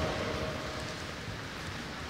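Steady background noise of a busy wrestling practice hall: many wrestlers moving, shuffling and grappling on the mats, with no single distinct sound standing out.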